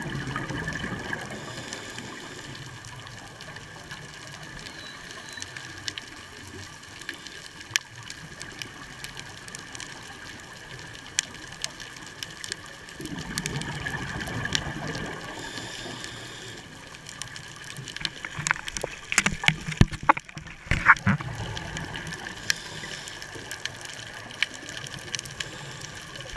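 Underwater sound of a scuba diver's exhaled bubbles rushing from the regulator, one gurgling burst near the start and a longer one about halfway through. Toward the end comes a run of sharp clicks, over a faint steady whine.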